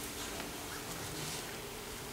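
A faint steady buzzing hum over quiet room noise.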